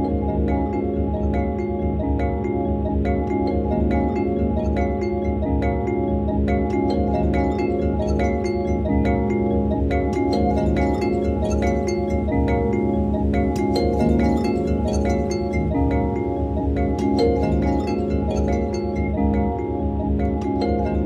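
Background music: a calm piece of evenly paced, ringing chime-like mallet notes over held tones and a steady low pulse.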